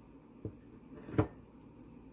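Two knocks against a mixing bowl as dough mixing begins, a soft one and then a louder, sharper one under a second later.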